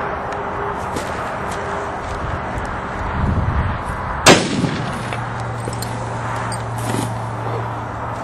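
A single heavy rifle shot about four seconds in, a 500-grain top-load round fired from a Capstick rifle, with a short echoing tail.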